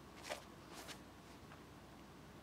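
Near silence with two faint short scuffs about a quarter and three-quarters of a second in: a disc golfer's shoes on the brick tee pad during a forehand drive.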